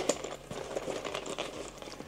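Soft rustling and crinkling of a black fabric drone carrying bag being handled and folded open in the hands.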